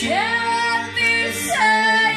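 A woman singing a slow, sustained vocal line over held accordion chords.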